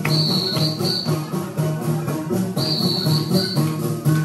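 Live folk dance music of strummed long-necked lutes, a rhythmic tune whose figure repeats every couple of seconds.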